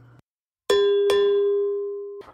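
A bell-like chime struck twice, less than half a second apart, its tone ringing on and slowly fading.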